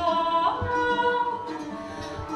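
A woman singing long held notes that slide from one pitch to the next, over plucked concert harp.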